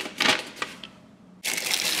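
Paper instruction leaflet rustling as it is handled. About one and a half seconds in, a thin clear plastic bag starts crinkling loudly and steadily around the adapter.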